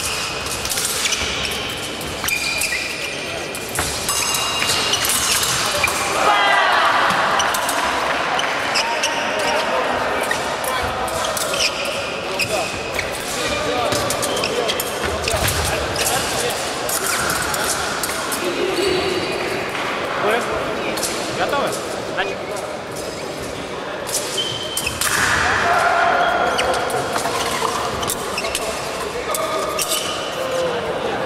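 Fencing bout: fencers' footwork thumping and stamping on a wooden sports-hall floor, with short sharp clicks of blades. Voices echo through a large hall.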